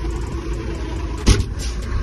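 Ford truck's engine running steadily, heard from inside the cab as a low rumble while the truck moves off. A single sharp knock sounds a little past halfway through.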